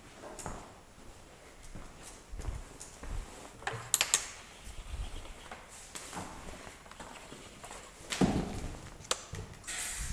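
Footsteps and handling clatter in a workshop: irregular knocks and taps, the loudest a dull thump about eight seconds in, and a brief hiss near the end.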